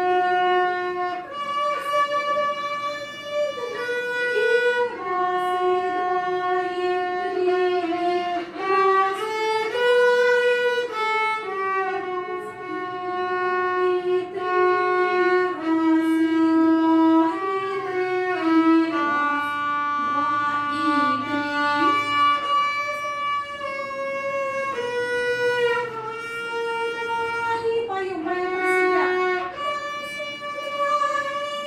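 Student violin playing a slow melody in long held notes, each lasting about one to two seconds, moving from note to note without a break.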